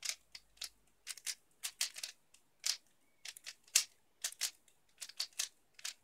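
3x3 speedcube being turned by hand: quick plastic clicks and short rasps of the layers turning, in irregular runs of about three or four a second, the loudest a little past halfway.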